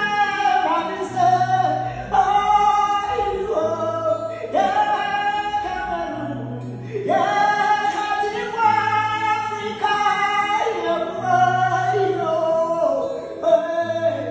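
A man singing long, drawn-out notes without words, his voice gliding up and down over an acoustic guitar with a bass note that repeats every two to three seconds.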